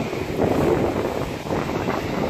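Wind buffeting the phone's microphone, a steady rushing noise, with sea surf underneath.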